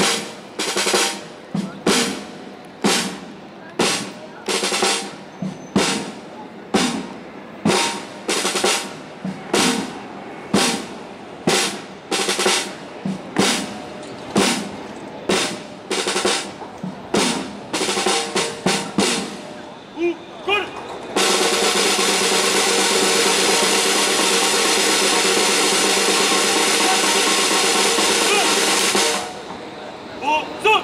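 Ceremonial parade drum, likely a snare, beating a slow, even march cadence of about one stroke a second, then a quicker run of strokes. After a brief pause comes a sustained drum roll of about eight seconds that stops abruptly.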